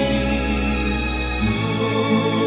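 Instrumental passage of a slow devotional song: held chords over a low bass note, which changes about one and a half seconds in.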